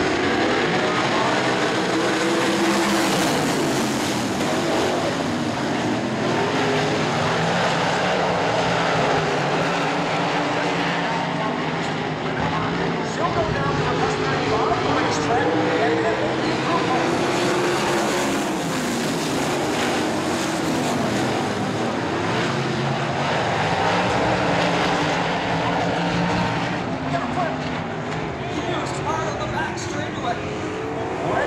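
A field of winged sprint cars with V8 engines running on a dirt oval. The engines rise and fall in pitch as the pack goes by, loudest a few seconds in and again around 18 to 21 seconds.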